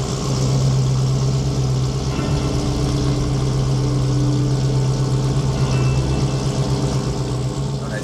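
Engine of a vintage pickup truck running steadily at low revs as the truck creeps out, with a steady low note that grows a little louder just after the start.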